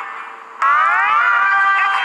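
Short musical jingle: about half a second in, a chord of several tones slides upward together, then holds steady.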